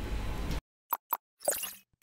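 Faint room hum that cuts off about half a second in, followed by silence broken by two quick pops and a third, slightly longer sound: sound effects of an animated logo sting.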